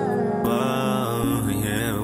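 Music from a hip-hop track: a melodic beat with sustained pitched lines that glide up and down, without rapped words.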